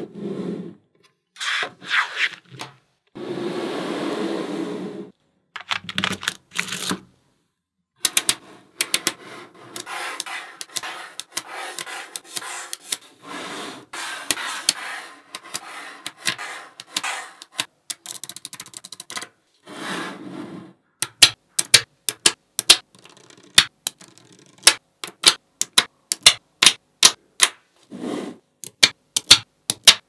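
Small metal magnetic balls clicking and snapping together as they are handled and pressed into place, with stretches of rattling and rubbing between the clicks. The clicks come thick and fast in the last quarter.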